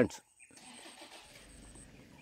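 Quiet outdoor background: a faint, even hiss with a thin, steady high tone that stops near the end.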